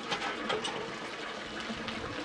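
Hand water pump being worked, its handle and mechanism clicking and clanking lightly, most noticeably near the start.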